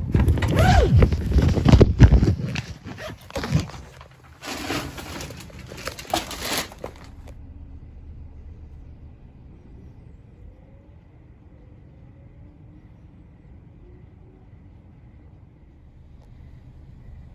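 Loud, irregular rustling and knocking from a phone being handled and turned over, stopping suddenly about seven seconds in. After that there is only a faint low rumble with a faint steady high tone.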